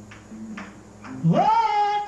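A singing voice swoops up steeply from low to a high note about halfway through and holds it, over a low steady tone. Before it come a couple of soft breathy sounds.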